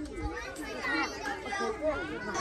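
Children's voices on a playground: several kids talking and calling at once, overlapping throughout.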